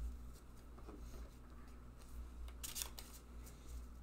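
Pokémon trading cards being handled and sorted by hand, quiet, with a short crisp rustle of cards late on over a steady low room hum.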